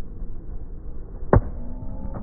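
A single sharp crack of a cricket bat striking the ball, about a second and a half in, over a steady low outdoor rumble.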